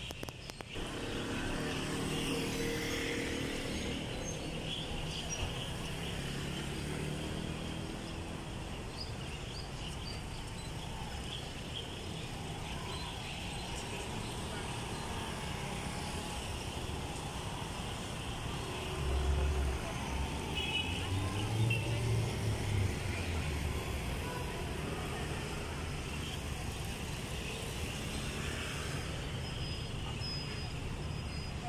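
Street traffic: cars and scooters running and passing, with a steady hum of traffic and distant voices. A louder low engine rumble passes about two-thirds of the way through.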